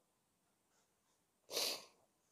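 A person sneezing once, a short sharp burst about one and a half seconds in, louder than the speech around it.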